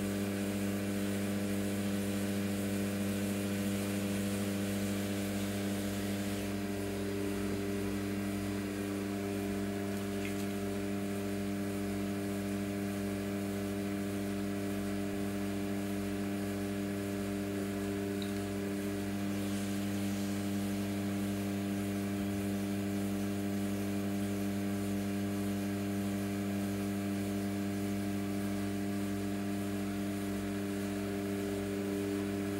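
Electric pottery wheel's motor humming steadily at constant speed, with a faint wet hiss of hands working the spinning clay that eases after about six seconds.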